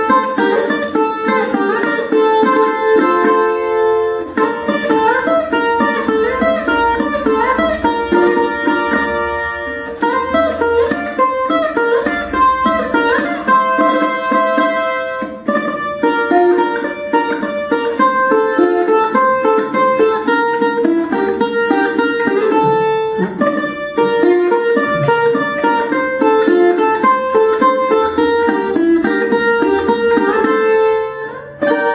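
Colombian requinto, a small guitar-like instrument strung in triple courses, picked in a quick single-note melody in carranga paso doble style.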